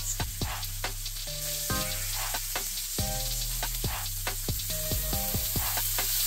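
Ground-chuck burger patties sizzling in hot olive oil in a cast iron skillet: a steady frying hiss with frequent crackling pops of spitting grease. Background music plays underneath.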